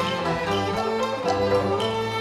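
Cantonese opera accompaniment ensemble playing an instrumental passage between sung lines, with bowed strings and plucked strings such as the pipa moving from note to note over a steady low bass.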